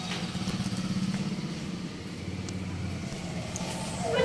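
Low, steady hum of a running engine, dropping in pitch about halfway through.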